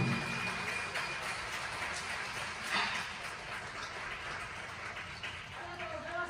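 The last wadaiko drum strokes ring out and die away in a large hall, then a low hush with faint scattered clicks.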